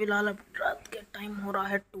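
Only quiet speech: a boy talking softly in short phrases with brief pauses between them.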